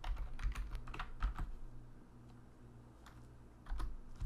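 Typing on a computer keyboard: a quick run of keystrokes in the first second and a half, a pause, then a few more keystrokes near the end.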